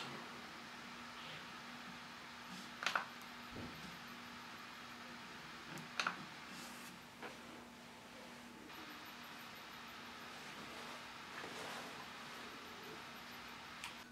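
Two short clicks about three seconds apart, a pointer button being clicked on a laptop, over a faint steady hum.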